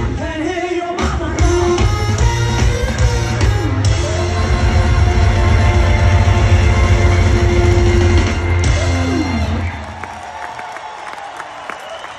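A live rock band with electric guitars, bass and drums, with singing, ends a song on a long held chord that slides down and stops about nine seconds in. The crowd then cheers and whoops.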